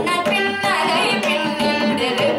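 Young female singer performing Carnatic vocal music, her voice gliding and ornamenting the notes over a steady drone, accompanied by mridangam strokes and violin.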